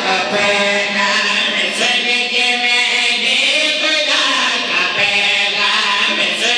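A group of men chanting a devotional verse in unison into microphones, their voices held on long sustained notes.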